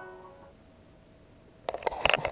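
Music from a Gatorade commercial playing through laptop speakers, its last held notes fading out within the first half second. A quiet stretch follows, then a few sharp knocks of the camera being handled near the end.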